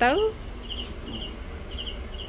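Crickets chirping: short, high chirps in quick pairs, repeating about once a second, over a low steady hum.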